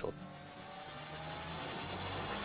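A rising sound-effect riser. Several tones climb slowly in pitch over a low steady hum, and the whole swells gradually in loudness.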